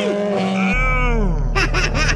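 Squeaky, quack-like cartoon voice effects with sliding, bending pitch. About two-thirds of a second in, the steady low background under them changes abruptly, as at an edit.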